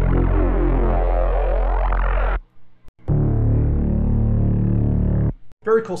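Two synth bass presets from the Bass Machine 2.5 rack, each a single held note of about two and a half seconds with a short gap between. The first has its upper tones sweeping and criss-crossing; the second is steadier.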